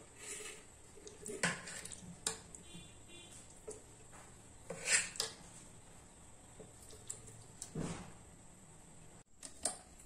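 Steel spoon clinking and scraping against a steel pot while scooping soft boiled mango pieces into a mixer jar: a few separate sharp knocks, the loudest about five seconds in.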